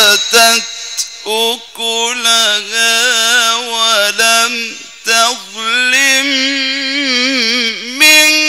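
A male Quran reciter chanting in the melodic mujawwad style. He holds long notes with ornamented, wavering pitch, broken by several short pauses.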